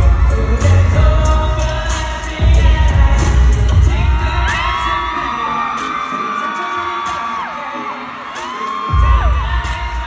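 Live K-pop song played loud through concert speakers, with singing over it. The heavy bass and beat drop out for a few seconds in the middle, leaving held, sliding sung notes, then come back in near the end.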